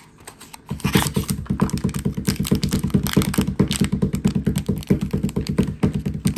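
A rapid, even clatter of clicks, about eight to ten a second, that starts abruptly about a second in and keeps going, like fast typing on a keyboard.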